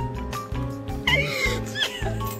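A cat meowing: wavering cries that begin about halfway through, over background music with a steady beat.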